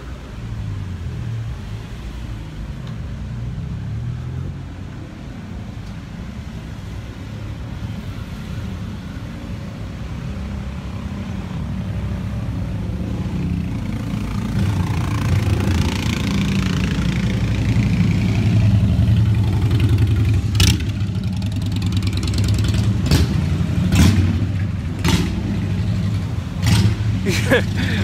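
Slow city street traffic: cars idling and creeping past, with a steady low engine rumble that grows louder midway as a motor scooter passes close by. Several sharp clicks come near the end.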